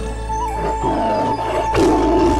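Background music with a long held high note, over a big-cat roar sound effect, with another roar near the end.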